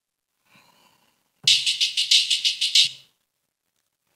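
Hi-hat loop sample from Serato Studio's library played back, a rapid, even run of crisp hi-hat hits. It starts about a second and a half in and lasts about a second and a half before cutting off.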